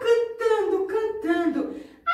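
A woman's voice, high-pitched and sing-song, in short gliding phrases without clear words.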